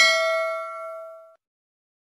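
Notification-bell sound effect of a subscribe animation: a single bright bell ding rings on with several overtones and fades away, gone about a second and a half in.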